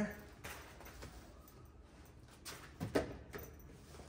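A few light knocks and clunks from an awning pole being slid into the bug screen on a van's rear door, the loudest pair about three seconds in.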